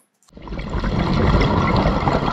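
Watery sound effect for a logo sting: a surge of water noise with a deep rumble, starting suddenly after a brief moment of silence.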